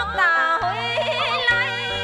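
Traditional Vietnamese tuồng (hát bội) music: a high, ornamented melody line sliding and wavering in pitch over steady low held tones, which come back in about a third of the way through.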